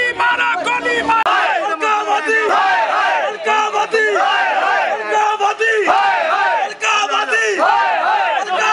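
A crowd of men shouting protest slogans together, loud raised voices overlapping, the shouts repeated again and again.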